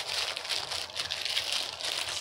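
Clear plastic garment bag crinkling and crackling as it is handled and pulled open, a dense run of small crackles with no pauses.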